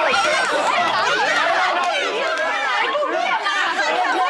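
Several people talking over each other at once, a steady crowd of overlapping voices.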